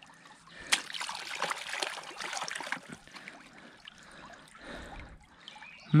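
Shallow creek water trickling, with a single click about a second in and then a louder spell of trickling water for about two seconds.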